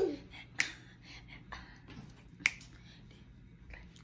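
Two sharp finger snaps about two seconds apart, with a few fainter clicks between.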